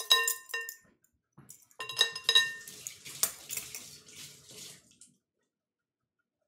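Kitchen dishes clinking and ringing, a couple of times near the start and again about two seconds in, followed by a few seconds of a rushing, splashing noise like running water that cuts off about five seconds in.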